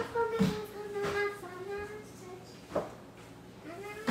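A young girl singing a wordless tune to herself in long held notes, with a few short hissing bursts, the loudest right at the start and another near three seconds in.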